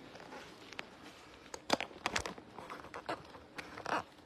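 A phone being handled and set back into its stand: a scatter of light clicks and knocks, more of them in the second half.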